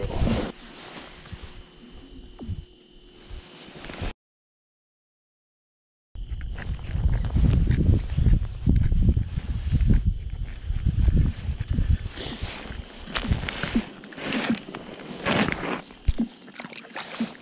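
Rustling and handling noise close to a body-worn camera's microphone, irregular and mostly low, with scattered crackles in the second half. It breaks off for about two seconds of dead silence at an edit cut, about four seconds in.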